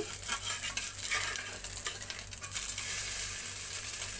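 Egg-dipped potato French toast sizzling steadily as it fries in oil in a pan, with a metal spatula scraping and clicking against the pan as the slice is pushed and lifted onto its edge.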